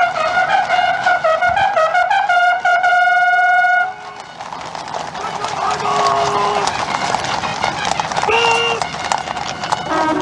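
A military brass band's trumpets play a melody of stepping notes that ends on a held note about four seconds in. After that the level drops, with a few sustained brass notes and the clip-clop of horses' hooves on the parade ground.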